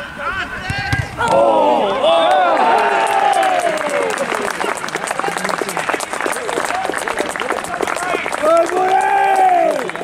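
Small football crowd and players shouting and cheering as a goal goes in, followed by scattered clapping and one more long shout near the end.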